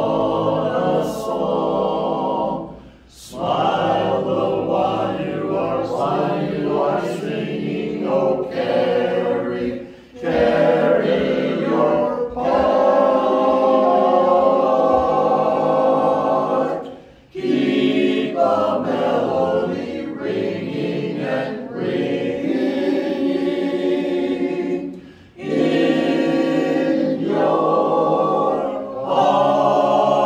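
Men's barbershop chorus singing a cappella in close four-part harmony, holding sustained chords in phrases, with brief breaks between phrases about every seven seconds.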